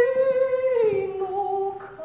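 A young woman singing solo, holding a long note with vibrato that steps down to a lower note just under a second in.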